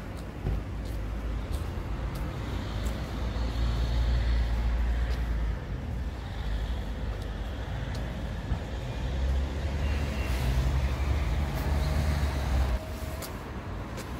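Road traffic on a city street: a low vehicle rumble that swells twice as vehicles pass and drops off suddenly near the end.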